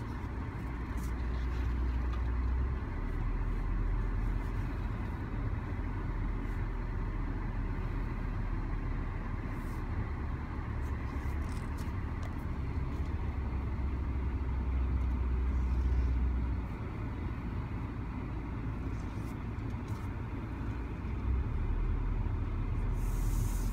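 Car driving slowly, heard from inside the cabin: a continuous low engine and road rumble whose deepest hum shifts between two pitches a few times.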